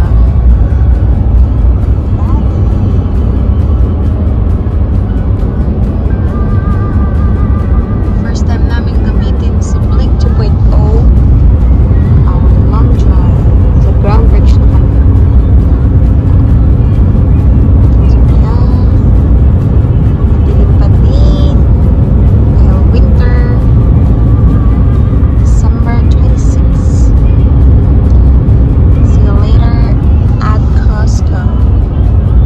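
Steady low rumble of road and engine noise inside a moving vehicle's cabin, with faint voices and snatches of music over it.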